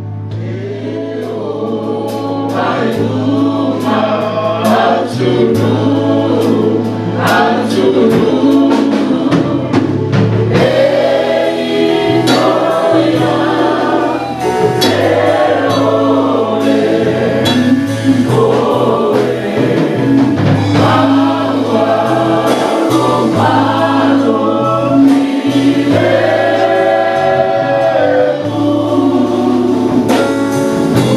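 A church worship band and congregation singing a Samoan-language gospel hymn, with voices on microphones over keyboard accompaniment, a held bass and a steady beat.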